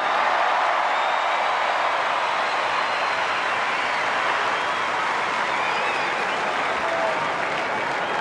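Large stadium crowd applauding steadily as a player is presented with his premiership medallion.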